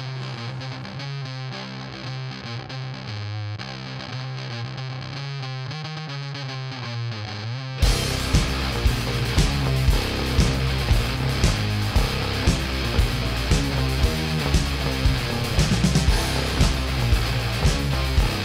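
Rock band music: a distorted electric guitar plays an intro alone over a held low note, then about eight seconds in the drums and full band come in with a steady beat.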